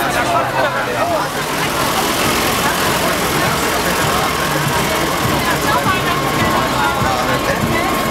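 Modern farm tractor's diesel engine running close by, under the chatter of a dense crowd.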